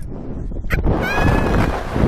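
Wind buffeting the microphone on a slingshot ride in flight, with a woman rider's high-pitched squeal held through the second half. A sharp click is heard just before the squeal.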